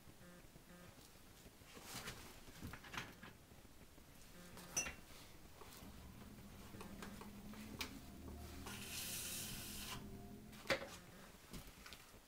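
Faint pottery-workshop handling sounds: scattered light knocks and clicks of clay and tools. Midway there is a low hum of the potter's wheel turning for a few seconds, with a short hiss near its end and a sharper knock just after.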